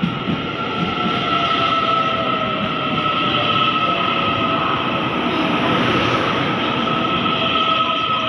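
Taiwan Railway TEMU2000 Puyuma tilting electric multiple unit running through a station at speed: a continuous loud rumble of wheels on rail as the cars stream past, with a steady high-pitched tone held over it.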